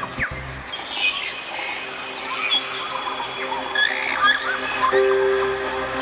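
Theme music with birds chirping and tweeting over it. A steady held note comes in about five seconds in.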